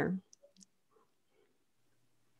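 The end of a woman's word, then near silence with a few faint clicks about half a second in.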